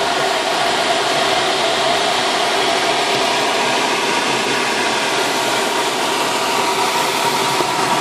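Steady rush of airflow around a glider's canopy and through its cockpit air vent in flight, with a faint steady whistle in it.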